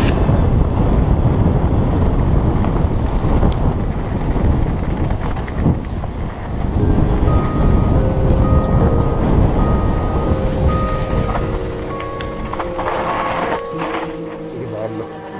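Wind buffeting a helmet camera's microphone while a mountain bike runs fast down a dirt downhill trail, with a steady low rumble of tyres and bike on the rough ground.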